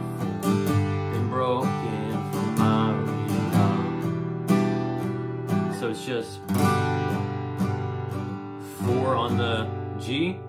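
Acoustic guitar strummed with steady down strums through a G, D and E minor chord progression, with a man's voice coming in at times over the chords.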